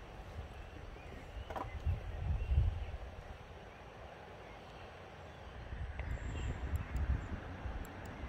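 Wind buffeting the microphone in uneven gusts, loudest about two seconds in and again near the end, with a few faint bird chirps.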